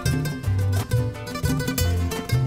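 Live instrumental music: a nylon-string guitar playing a quick run of plucked notes over deep bass notes.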